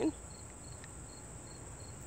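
Crickets chirping in a steady rhythm: short, high-pitched chirps about three to four times a second.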